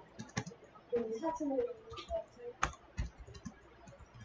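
Typing on a computer keyboard: irregular key clicks at an uneven pace, one sharper keystroke a little past halfway.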